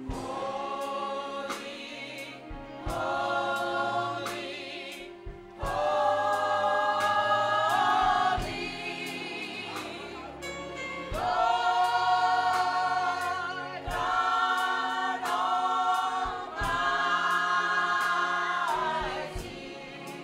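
Women's gospel choir singing in full harmony, holding long chords in phrases that swell and break every few seconds. A sharp beat keeps time about twice a second underneath.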